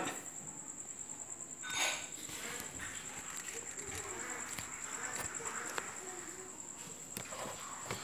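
Quiet room with a steady, faint high-pitched tone, a brief soft noise about two seconds in, and a few light clicks.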